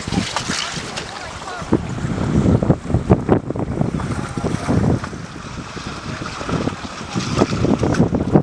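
Gusty wind buffeting the microphone, with small waves washing against the rocks, in uneven surges.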